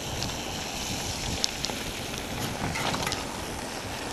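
Wind buffeting the microphone of a bike-mounted action camera, over the steady rumble of mountain bike tyres rolling on a rough gravel track, with scattered sharp clicks and rattles.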